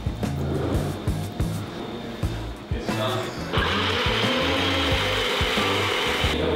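A bullet-style personal blender starts about halfway through and runs steadily, blending acai with milk, over background music with a beat.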